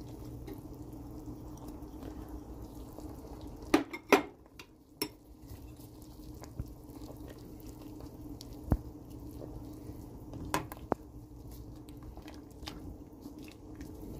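A metal spoon knocking and scraping against a cooking pot in a few sharp clicks, two close together about four seconds in, as ground walnuts are stirred into a simmering stew, over a steady low hum.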